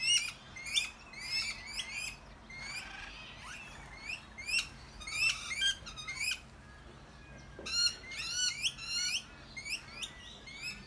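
Several rainbow lorikeets calling in short, shrill screeches, repeated in quick runs and overlapping, with a short lull about seven seconds in before another dense run of calls.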